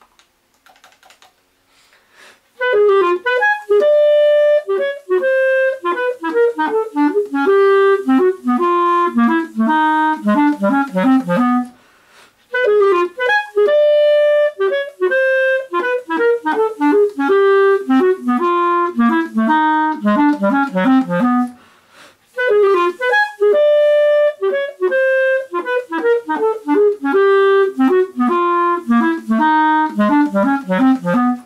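A clarinet playing the same fast technical exercise three times, each run about nine seconds of quick separate notes that work downward from the upper register to the low register, with a short breath between runs. Faint clicking comes before the first run.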